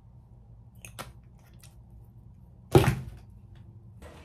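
Handling noise: a few faint clicks about a second in, then one sharp knock just before three seconds in.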